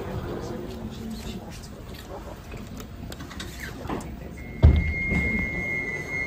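Light-rail tram at a platform: a low running rumble, then a sudden loud thump about four and a half seconds in, with a steady high electronic warning tone from the tram's doors sounding from just before the thump to the end.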